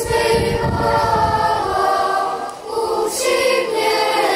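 A choir singing a phrase of held notes.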